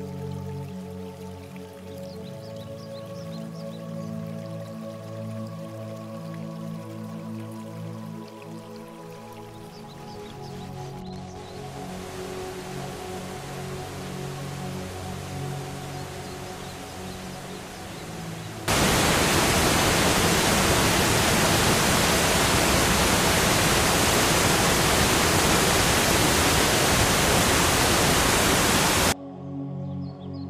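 Background music, with a rising rush of water under it; then, about two-thirds of the way in, a close waterfall's loud steady rushing starts abruptly and cuts off suddenly near the end.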